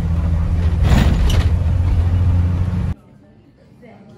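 Road noise of a car travelling at highway speed: a loud, steady low rumble of tyres and engine that swells briefly about a second in. It cuts off abruptly near the end, giving way to faint music.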